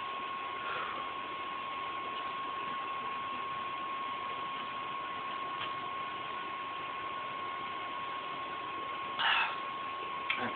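Steady background hiss with a constant thin high whine, the noise floor of the phone's recording, while no one speaks; a short noisy sound comes about nine seconds in.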